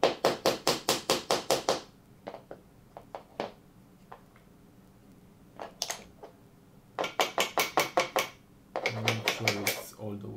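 Small claw hammer tapping glued plywood uprights into pre-cut holes in a plywood plate: quick runs of light taps, about five a second, at the start and again from about seven seconds in, with a single tap just before six seconds.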